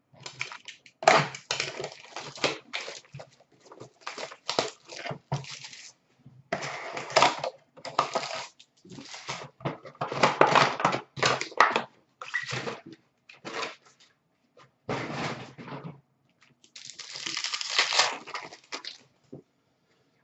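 A box of trading cards and its foil packs being torn open by hand: a run of irregular ripping, tearing and crinkling noises of cardboard and wrapper, in short bursts with brief pauses.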